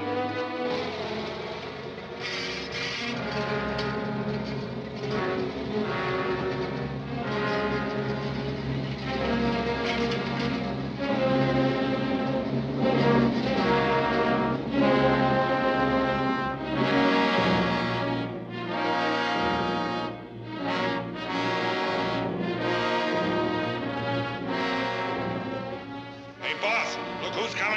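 Orchestral film score with prominent brass over a sustained low note, growing louder toward the middle.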